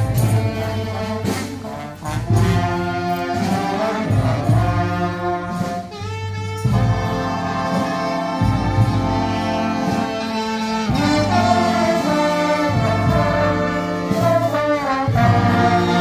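Marching band playing a tune live on trombones, trumpets and other brass, with a drum keeping the beat underneath.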